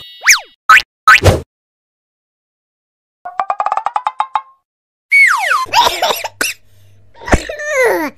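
A string of cartoon sound effects: quick pitch-glide boings and plops in the first second and a half, then a rapid run of ticks climbing slightly in pitch, then falling whistle-like swoops, with short silences between them.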